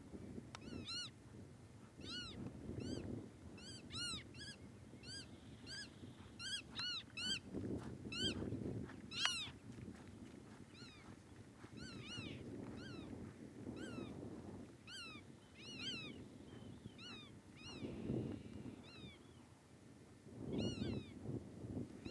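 A bird calling over and over: short, high, mewing notes, about one or two a second, faint.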